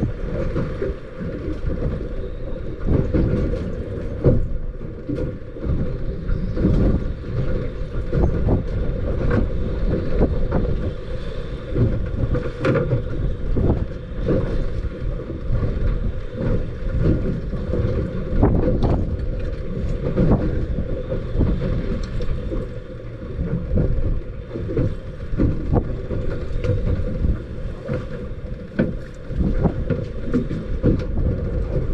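Gusty wind buffeting the microphone as a low, uneven rumble, with choppy water slapping against the hull of a small boat in short irregular knocks.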